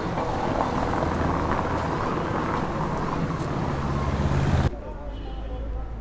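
City street traffic noise with a motor vehicle's engine running close by, its low hum growing louder for the first four and a half seconds. It then cuts off abruptly to quieter outdoor background with people's voices.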